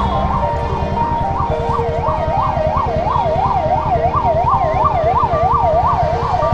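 Ambulance siren in a fast rising-and-falling yelp, about three sweeps a second, over the rumble of vehicle engines and road noise.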